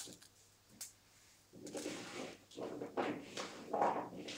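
Aluminium foil crinkling and rustling under a hand as mushroom caps are set down on it: two sharp taps first, then several crackly bursts over the second half, the loudest just before the end.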